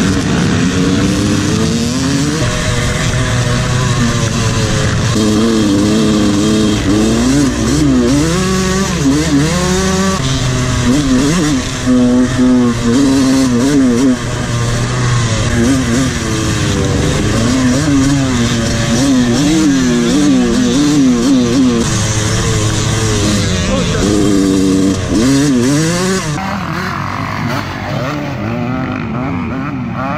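Suzuki motocross bike's engine revving hard under load, its pitch rising and falling over and over as the rider works the throttle and gears, with other dirt bikes close by. About 26 seconds in it gives way to a duller, quieter sound of bikes heard from further off.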